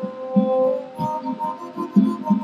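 Mvet, the Fang stick-zither harp, being plucked: low notes about every half second under higher tones that ring on.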